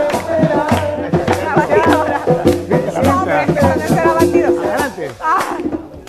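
Live band playing an up-tempo tropical dance number with steady percussion strokes and voices over it; the music breaks off shortly before the end.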